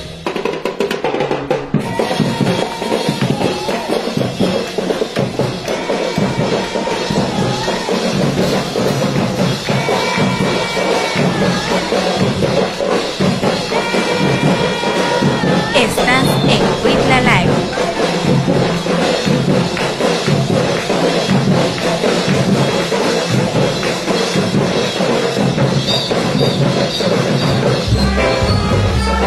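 Live band music: an electric bass guitar played with drums keeping a steady beat, amplified through loudspeakers.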